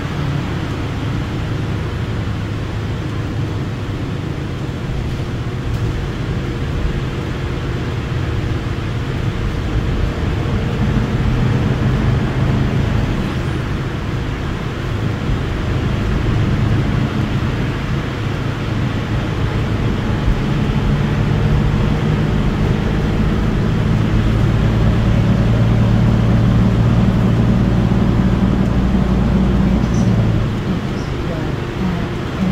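Cabin noise of a New Flyer XDE60 diesel-electric hybrid articulated bus under way: a steady low engine and drivetrain drone that grows louder a little after a third of the way in, and again over the last third.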